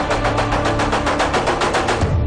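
Dramatic TV-serial background score with rapid, evenly spaced percussion hits.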